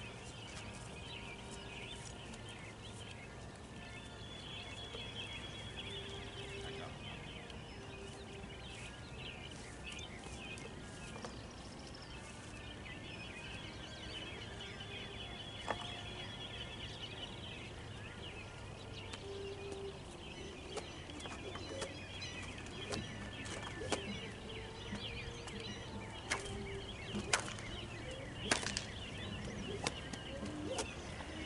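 Faint birds chirping and calling throughout, over a steady low background rumble, with a few sharp clicks in the last few seconds.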